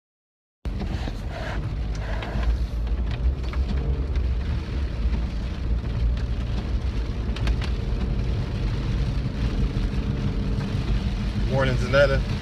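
Steady low rumble of a car's cabin on the move, road and engine noise heard from inside, starting about half a second in after a dropout. A voice begins briefly near the end.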